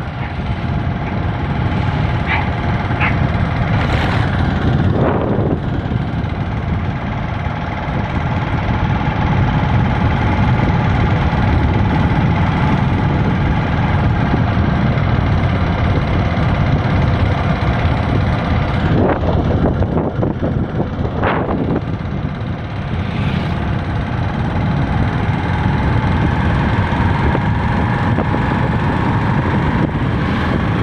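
Steady engine and road noise of a vehicle driving along a road, heard from on board with a heavy low rumble. Other vehicles whoosh past close by a few times, about five seconds in and twice around twenty seconds in.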